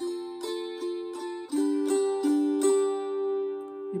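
Wing-shaped gusli (Baltic psaltery) strummed in chords: a steady run of strums, about two a second, with the left-hand fingers damping strings to change the chord. The last chord rings on for more than a second.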